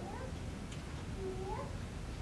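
A small child's voice in the audience: two short meow-like vocal sounds, each holding a note and then rising, about a second apart, over a low room murmur.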